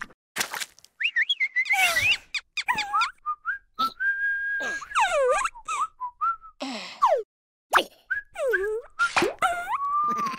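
Whistling, cartoon-style: a held note about four seconds in, several steep falling pitch glides, and quick wavering slides, broken up by short plops and clicks.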